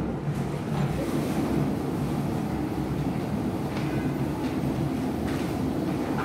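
Banknote counting machine running steadily as it feeds through a bundle of notes, a continuous low mechanical whir.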